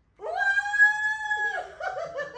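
A young girl's high-pitched squeal of delight: one long held note that rises at the start and falls away at the end, followed by short excited voice sounds.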